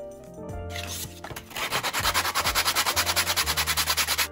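A hand rubbing quickly back and forth over the surface of a natural-leather wallet, in fast even strokes of about seven a second. The rubbing starts about a second and a half in, over background music.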